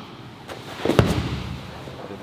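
A jiu-jitsu takedown: a short scuffle of feet and gi cloth, then one sharp thud as a body lands on the training mat about halfway through.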